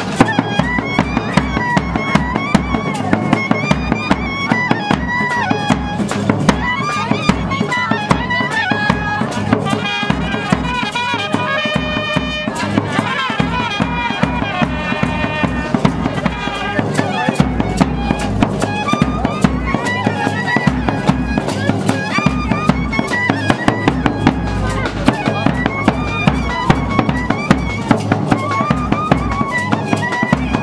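Live wedding band music: saxophone and clarinet playing a wavering melody over a fast, steady beat.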